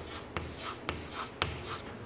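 Chalk writing figures on a chalkboard: faint scratching strokes with three sharp taps about half a second apart.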